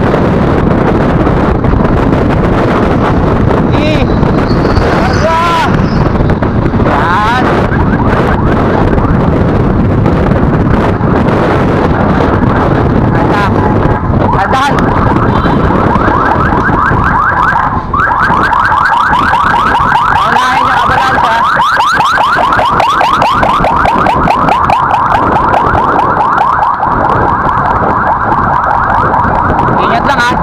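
Heavy wind buffeting on a bike-mounted camera's microphone while riding at speed. From about halfway through, a rapid, evenly repeating pulsing tone joins it and runs on over the wind.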